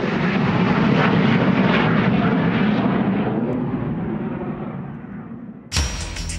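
BAE Harrier GR9 jump jet's Rolls-Royce Pegasus turbofan at take-off power as the jet climbs away from the runway. The jet noise slowly fades as its higher tones drop away, then cuts off suddenly near the end.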